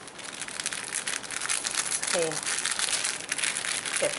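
Clear plastic bag crinkling steadily as hands handle it and pull its top open.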